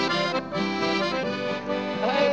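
Accordion playing a sertanejo melody in held notes over a strummed steel-string acoustic guitar, an instrumental passage with no singing.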